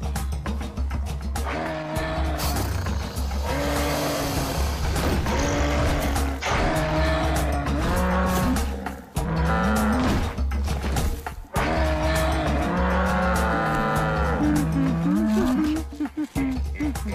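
A herd of cartoon Cape buffalo bellowing, a string of long wavering calls one after another over a steady low rumble.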